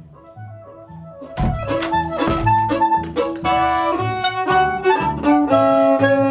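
Lively folk dance music. Quiet, evenly pulsing low bass notes open it, then a violin comes in loudly about a second and a half in, playing a bouncing rhythm over the bass.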